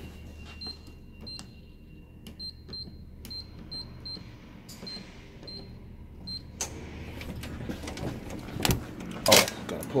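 Door-access keypad beeping as a code is punched in: a dozen or so short high beeps, one per key press, at an uneven pace over about six seconds. After it, a wider rush of noise comes up, and two sharp knocks near the end as the door is worked.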